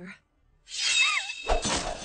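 Anime magic sound effect: a rushing swell with a brief wavering tone, then a sudden low thud about one and a half seconds in that gives way to a steady rushing noise.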